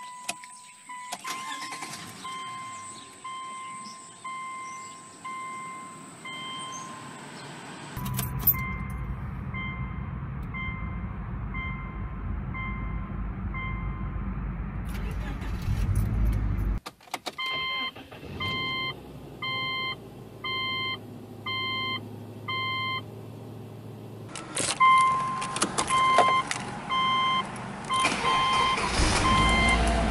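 Subaru Outback dashboard warning chime, one pitched tone repeating about once a second. Through the middle part an engine runs under the chimes, louder briefly just before they pause.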